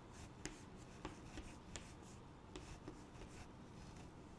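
Faint chalk strokes and taps on a blackboard as a segment of a drawn circle is shaded in, a few short scratchy strokes spread across the moment.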